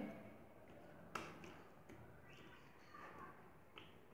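Near silence, with a couple of faint soft clicks and a brief faint rustle of hands pressing a cloth down onto a wet sheet of recycled paper pulp to squeeze the water out.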